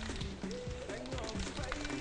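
Cocktail shaker full of ice being shaken, rattling under background music with a held melody.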